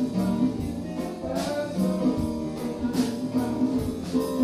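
Live jazz quartet playing a tune: piano and a second keyboard over drum kit and congas, with steady percussion strikes under sustained chords.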